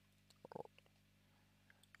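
Near silence: room tone with a faint, steady low hum and a faint, brief sound about a quarter of the way in.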